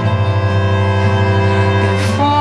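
Violin bowed in long held notes over a strong, low sustained note that comes in at the start.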